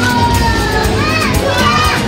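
A group of children shouting and calling out in high voices over background music with a steady low bass.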